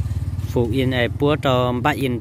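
People talking, over the low steady hum of an idling motorcycle engine.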